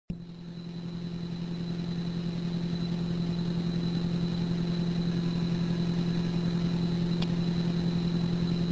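Steady low electrical hum on a recorded telephone line, with faint high whines above it, growing slowly louder; a faint click comes about seven seconds in.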